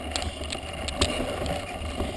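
Mountain bike rolling over a dry dirt-and-gravel track: steady tyre and drivetrain noise with a low rumble, broken by a few sharp rattling knocks from bumps, the loudest about a second in.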